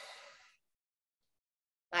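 A woman's short breath, lasting about half a second, then silence.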